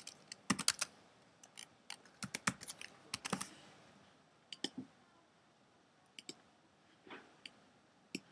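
Typing on a computer keyboard: a quick run of keystrokes as a short word is typed, followed by a few scattered single clicks.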